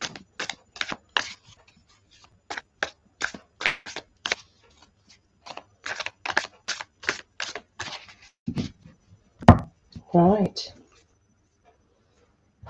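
A deck of tarot cards being shuffled by hand: two runs of quick, short rasping strokes about three a second. Near the end comes a sharp knock, the loudest sound, followed by a brief hummed voice sound.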